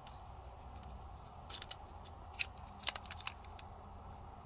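A few faint, sharp little clicks of a hex wrench and a small screw being worked on the right-side safety lever of a Ruger Mark IV pistol frame, about six of them spread over the second half.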